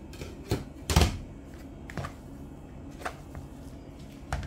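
Plastic mixing bowl of grated coconut being handled and tilted on a countertop, giving a few sharp knocks and clicks, the loudest about a second in.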